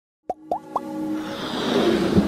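Animated-logo intro sound effects: three quick rising plops about a quarter second apart, then held synth tones under a swelling riser that builds toward the end.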